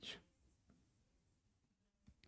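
Near silence, with faint scratching of a stylus writing on an interactive touchscreen board.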